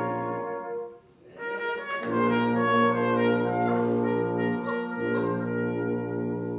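Brass quintet of two trumpets, French horn, trombone and tuba playing a traditional folk tune in sustained chords. The music breaks off briefly about a second in, and the full ensemble comes back in about two seconds in, with a short gap in the low bass line near the end.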